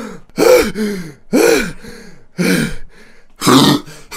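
A man's voice clearing his throat, four short throat-clearing sounds about a second apart, as if readying his voice before a line.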